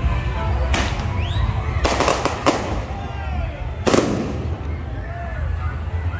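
Firecrackers going off: a sharp bang about a second in, a quick cluster of bangs around two seconds, and another bang near four seconds, over music and crowd voices.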